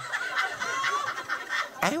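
Live audience laughing, many voices overlapping in a dense, continuous mass.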